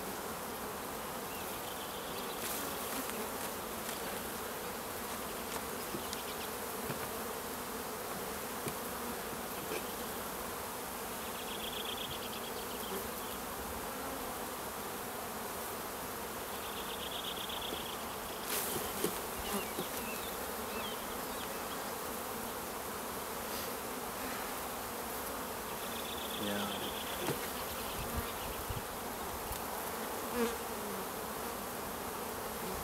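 Honeybee colony humming steadily from an open hive during an inspection, with a few light wooden knocks as frames are lifted out.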